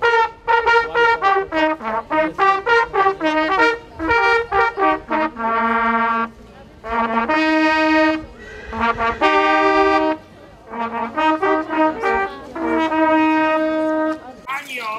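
Ensemble of brass hunting horns and long fanfare trumpets playing a hunting fanfare: runs of quick short notes broken by longer held notes, with a long held note near the end.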